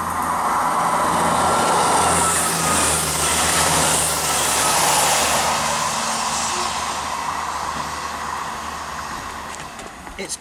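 South West-liveried diesel multiple unit passing the platform at speed, its wheels running on the rails over the steady hum of its diesel engines; the noise peaks in the first half and fades steadily as the train draws away.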